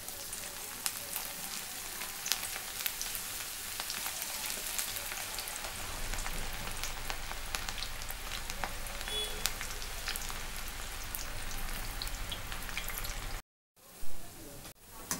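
Onion pakoda batter deep-frying in hot oil in an aluminium kadai: a dense, steady sizzle full of small crackles and pops. It cuts out abruptly about half a second before the end.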